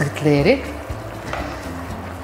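Food sizzling in a frying pan, a steady hiss, under background music with steady bass notes and a short sung glide about half a second in.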